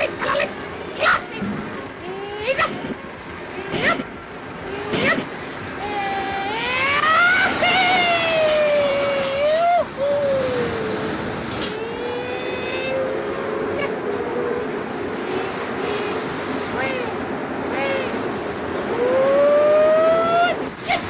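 Cartoon soundtrack: the line character's nonsense voice cries out in long rising and falling wails over a steady rushing noise. There are a few sharp clicks in the first seconds, and a last rising wail comes near the end.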